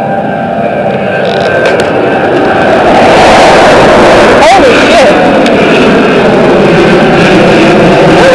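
Loud engine noise that swells about three seconds in and then stays loud.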